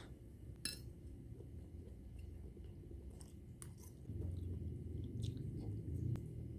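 A person chewing a mouthful of cellophane noodles, with a few light clicks. A low rumble grows louder about four seconds in.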